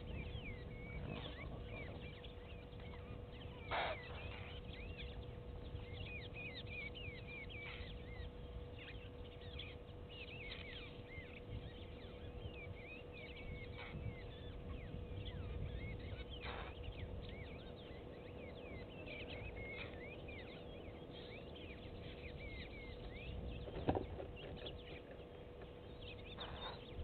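Wild birds chirping: many short, quick calls all through, over a steady hum and a low rumble. A few sharp clicks or knocks stand out, the loudest about four seconds in and near the end.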